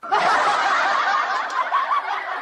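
Continuous snickering and chuckling laughter, with many overlapping small pitch wobbles and no words.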